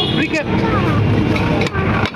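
People talking loudly, with several voices overlapping in a busy street market.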